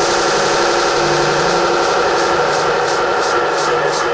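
Drum and bass track in a breakdown: held synth chords and a drone with the kick drum dropped out, while light high percussion keeps ticking.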